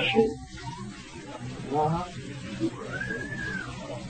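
Voices from a church congregation calling out in a pause of the preaching: a short utterance about two seconds in, then one drawn-out call that rises and falls in pitch. A steady low hum from the old recording runs underneath.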